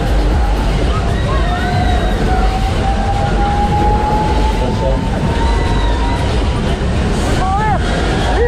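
Fairground din on a ride: a heavy low rumble with voices and music mixed in, and a long, slowly rising tone for several seconds.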